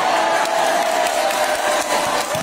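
Crowd of spectators cheering and clapping, with one long drawn-out shouted call held over the din.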